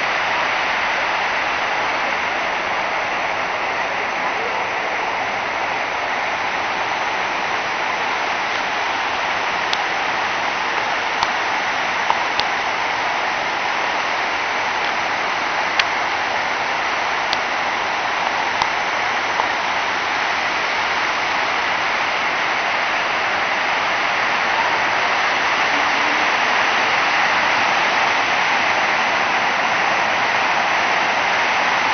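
Water of a tiered cascade fountain spilling over its stepped ledges into the pool below: a steady, even splashing rush.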